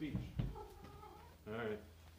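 Domestic cat meowing: a faint drawn-out meow, then a louder short one about a second and a half in.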